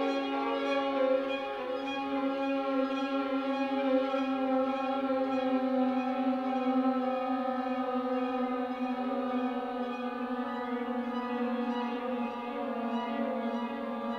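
Violin playing slow, long held bowed notes that change pitch only gradually.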